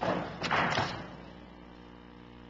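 Two dull thumps about half a second apart in a large room, the second longer and noisier, like handling noise from books or papers being set down near a microphone.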